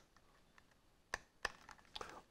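A few light clicks, three or four in under a second starting about a second in, from a plastic handheld RJ45 network cable tester being handled.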